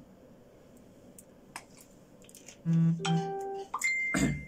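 A few faint clicks of a plastic water bottle while someone drinks from it, then a short series of loud, dead-steady electronic tones: a low tone, a higher one, and a high beep that starts near the end and carries on.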